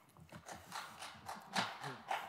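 A run of irregular light knocks and clicks, several a second, with faint murmuring under them.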